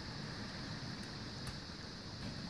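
HO-scale coal hopper cars rolling along model railroad track: a faint, steady low rumble with a couple of light clicks.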